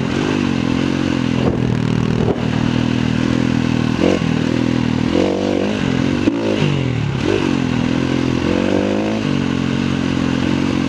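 KTM 350 EXC-F single-cylinder four-stroke dirt bike engine under way, its revs rising and dropping back again and again as the throttle is worked. A few sharp knocks come from the bike over the rough trail.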